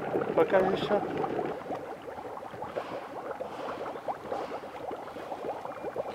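Dry ice bubbling vigorously in a bowl of warm water: a dense, irregular crackle of gas bubbles bursting at the surface.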